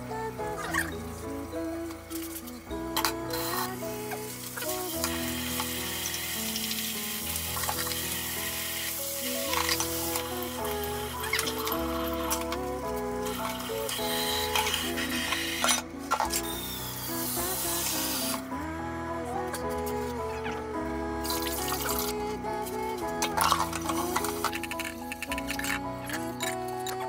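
Background music with steady notes and a bass line. Under it, a steady hiss runs from a few seconds in until about two-thirds of the way through, then stops.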